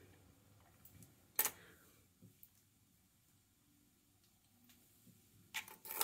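Faint clicks of metal hair pins and double-prong clips being pulled out of pin curls, over near silence; the sharpest click comes about a second and a half in. A brief rustle follows near the end.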